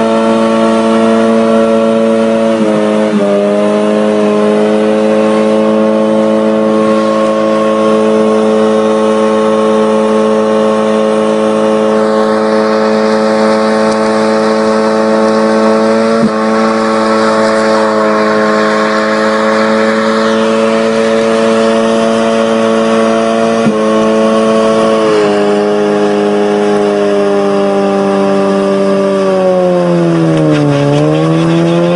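Tofaş sedan's engine held at high revs in a long burnout, spinning its rear tyres on the tarmac. The engine note stays steady, dipping briefly three times and sagging then climbing again near the end, and a rushing tyre hiss grows louder through the middle.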